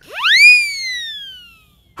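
Whistle-like cartoon sound effect: one clear tone that sweeps up quickly, peaks about half a second in, then glides slowly down and fades away.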